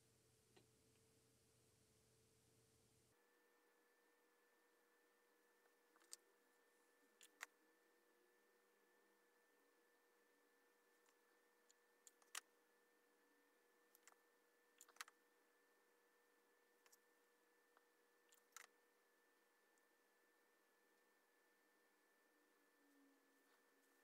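Near silence: faint room tone with scattered short clicks and taps from hand work with a hot glue gun and the wire frame.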